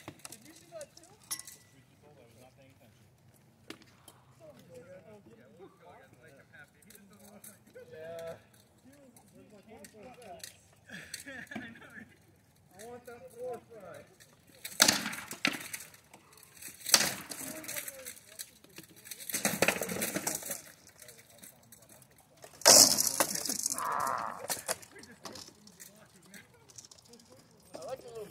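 Armoured sparring: rattan swords striking shields and armour in a run of sharp cracks and clatter that starts about halfway through, the loudest blow near the three-quarter mark. Quiet voices come before the blows.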